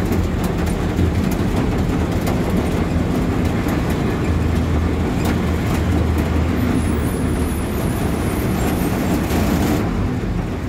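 Inside the cab of a heavy road vehicle on the move: a steady low engine drone and road noise, with frequent small rattles and knocks from the cab.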